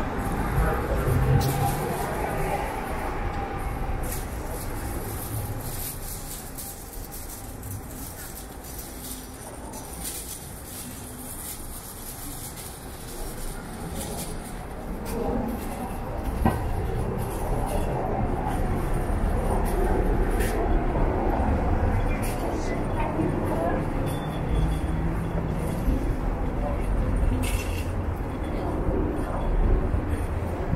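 Busy city street ambience: a steady rumble of traffic, dipping in the middle and building again after about fifteen seconds, with indistinct voices of passers-by.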